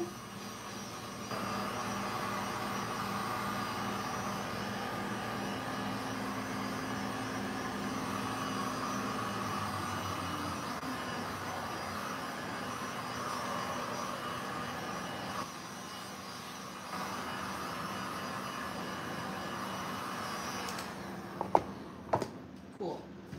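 Electric heat gun running steadily as it blows over wet epoxy resin to loosen it so it flows back across the board. It drops lower for a moment about two-thirds of the way through and switches off near the end.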